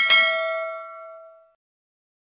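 Notification-bell sound effect for the animated bell icon: a short click, then a single bright ding whose ringing tones fade out over about a second and a half.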